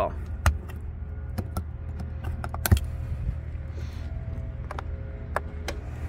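Scattered sharp plastic clicks and knocks over a steady low hum, from hands working the fittings of an SUV's cargo area, such as a power-outlet lid. The loudest knock comes a little before the middle.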